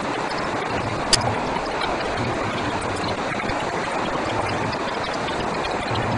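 Steady rush of a river in flood running below, with a single sharp click about a second in.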